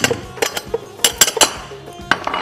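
Kitchen utensils and dishes clinking and knocking at a worktop: a few sharp clinks, with a quick cluster of them about a second in, over background music.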